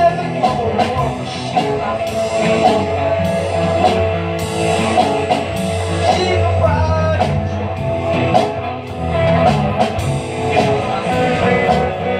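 Live rock band playing through a PA: electric guitar lead over bass and a drum kit.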